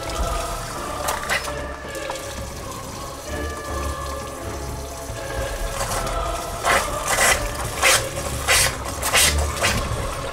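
Kitchen faucet running into a stainless-steel sink, the water carrying methane gas. In the second half come several sharp bursts of noise as the gas flares at the tap.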